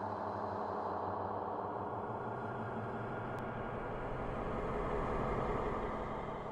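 A dark ambient music drone: a steady, layered hum of held low tones over a rumbling wash, easing off at the end.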